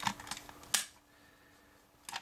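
Light plastic clicks and taps from hands handling a Kenner M.A.S.K. toy vehicle and action figure, with one sharper click a little before the middle.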